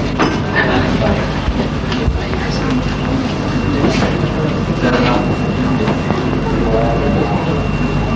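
Indistinct voices, low and unclear, over a steady low hum and a thin high-pitched whine in the recording.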